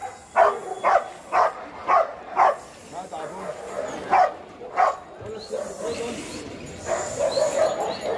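Golden retriever barking repeatedly, about two barks a second for the first two and a half seconds, then two more barks about a second apart.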